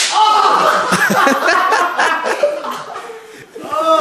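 A bullwhip lash cracks sharply across a man's backside at the very start, followed by loud yelling and laughter from the men.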